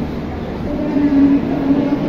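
Passenger train standing at a station platform, giving a steady drone with a clear low tone over a constant rumble; the tone swells about a second in.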